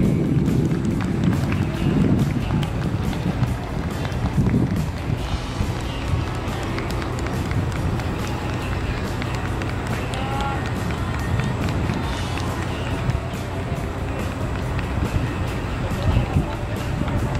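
Outdoor stadium ambience: a steady low rumble with people's voices in the distance, strongest in the first five seconds.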